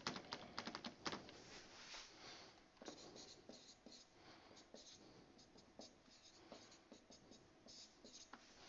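Marker pen writing on a whiteboard: faint, irregular short scratches and taps of the felt tip as figures are written.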